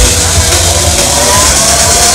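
Large Frisbee pendulum fairground ride in motion: a steady loud hiss with a low rumble, and a whine that rises in pitch.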